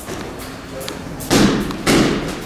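Two loud thuds about half a second apart in the second half: gloved punches landing on a double-end bag.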